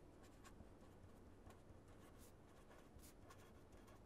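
Pen writing on paper: faint, irregular scratchy strokes of handwriting over a faint low hum.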